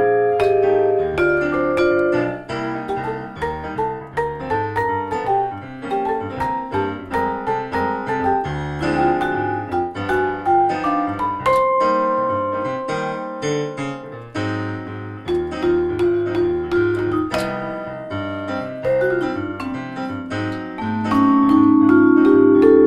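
Jazz duo: a Yamaha electric keyboard played with piano tone, chords and melody over low bass notes, with a Musser vibraphone struck with yarn mallets alongside it. The music runs without a break, and the keyboard leads.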